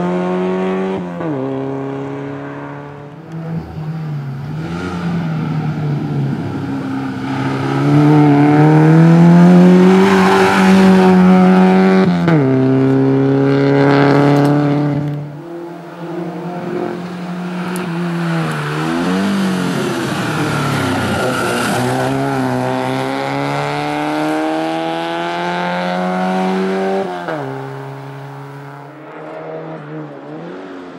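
A small hatchback race car's engine worked hard through a cone slalom. Its pitch climbs under acceleration and drops suddenly on gear changes and braking, three times. It is loudest in the middle stretch as the car passes closest.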